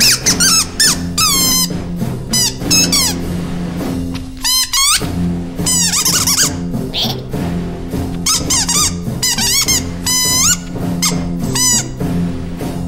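Cartoon background music under repeated bursts of high-pitched squeaky chattering from a group of cartoon ants, the squeaks gliding quickly up and down. The music drops out briefly about four and a half seconds in.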